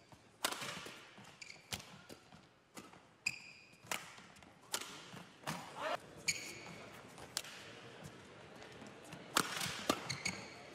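Badminton rally: rackets striking the shuttlecock in an irregular run of sharp hits, with brief shoe squeaks on the court floor between them.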